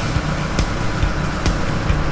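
Boat engine running steadily with a low rumble, with a few short knocks over it.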